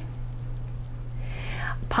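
A steady low electrical-sounding hum, with a soft breath drawn in about a second and a half in, just before speech resumes.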